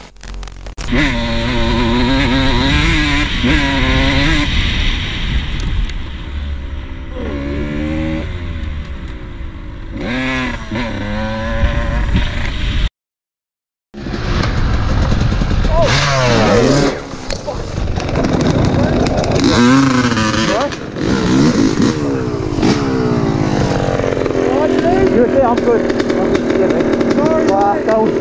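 Dirt bike engines running and revving on a trail, their pitch rising and falling with the throttle. The sound cuts out completely for about a second just before halfway.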